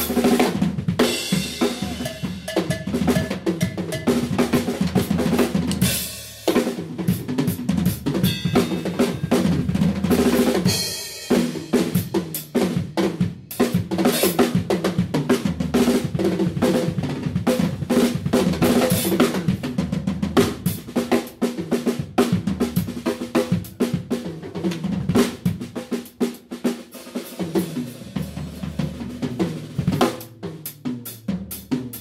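Live drum kit solo: dense, unbroken snare and bass drum strokes with rolls, rimshots and cymbals, easing briefly about six and eleven seconds in.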